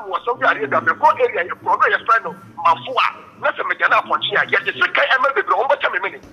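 Continuous speech: a voice talking without a pause, in a language the transcript did not capture.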